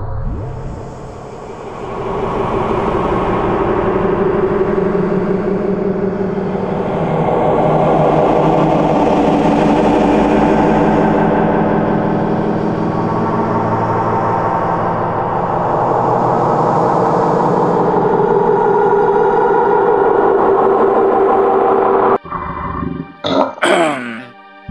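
Dark ambient music: a dense, sustained synthesizer drone of many layered tones. It dips briefly in the first two seconds, then holds steady. It cuts off abruptly near the end and is followed by a few brief sharp sounds.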